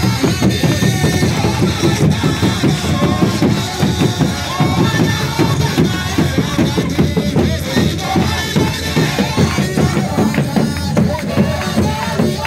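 Akurinu congregation singing a praise song (kigooco) led by a man on a microphone, with large double-headed drums beaten with sticks in a steady beat.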